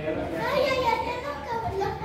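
A child talking in a high voice, with other people's voices around.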